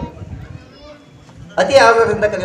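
A man speaking into a microphone, his voice resuming loudly about one and a half seconds in after a pause in which faint children's voices can be heard.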